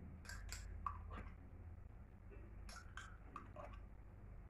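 Metal spoon scraping and clicking against a small glass jar and a ceramic salad bowl while scooping out spoonfuls of mayonnaise: a few faint, short scrapes and clicks.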